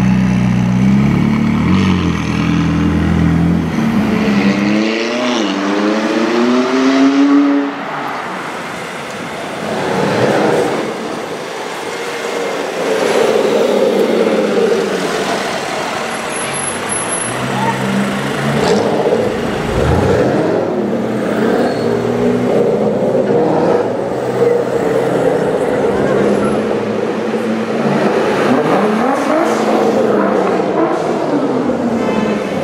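Supercar engines on a city street: a McLaren 675LT Spider's twin-turbo V8 runs, then climbs steeply in revs for about three seconds before dropping off sharply. Later other sports cars rev and accelerate among traffic, with further rev rises near the end.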